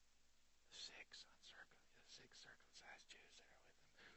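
Faint whispered speech, quiet and with little voiced sound, starting nearly a second in.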